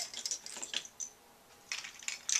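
Light clicks and rattles of Beyblade spinning tops' small metal and plastic parts being handled as one top is swapped for another. The clicks come in two short spells with a brief lull between them.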